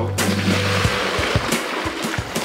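Background music over a steady rush of water splashing and pouring, starting just after the beginning.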